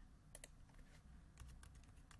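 Faint keystrokes on a computer keyboard, a handful of separate clicks as a word is typed.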